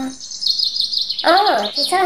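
Birds chirping in a rapid, high-pitched trill, with a voice speaking over them from about halfway through.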